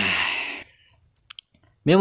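A man's drawn-out sigh, falling in pitch. A little past the middle come three faint short clicks, and a man starts speaking near the end.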